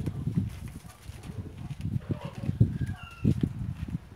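Footsteps on a dirt yard, an uneven series of low thumps as someone walks away, with a brief faint bird chirp about three seconds in.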